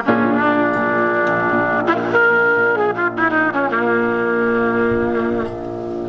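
Silver trumpet playing a slow phrase of long held notes over upright piano accompaniment. The trumpet stops about half a second before the end while the piano chord rings on.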